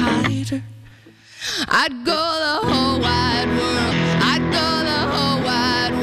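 Live electric-guitar rock playing. About a second in it thins out to a fading held note, followed by swooping pitch bends. The full playing then comes back in with wavering, vibrato-laden notes.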